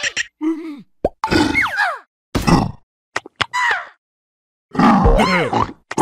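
Cartoon characters' wordless vocal sounds: grunts, laughs and exclamations in several short bursts with brief silences between them, the longest and loudest near the end.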